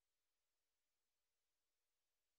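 Near silence: only a faint, steady digital noise floor.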